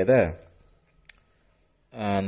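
A man's voice trails off at the end of a word, then a pause with a single faint, short click about a second in.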